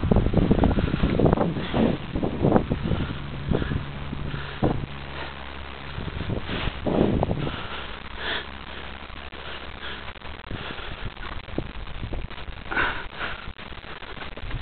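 Horses sniffing and blowing close to the microphone, mixed with rubbing and wind noise; louder in the first half, fainter and more scattered later.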